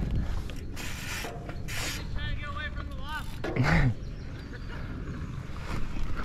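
Wind rumbling on an action camera's microphone as a dirt jump bike rolls over packed dirt, with short breathy bursts and a brief grunt-like breath about two-thirds of the way in.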